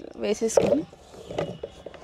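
Chopped beetroot pieces sliding off a plastic cutting board and dropping into a plastic bowl: a clatter in the first second, then a few light knocks and scrapes as the rest are pushed off the board. A brief bit of a woman's voice sounds near the start.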